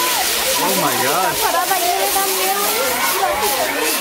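Castillo firework tower burning: its spinning wheels and spark fountains give a loud, steady hiss. Onlookers' voices rise and fall over it.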